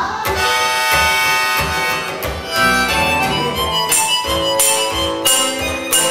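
Live solo music: acoustic guitar strummed under long, steady held notes, with the strums coming through more strongly in the second half.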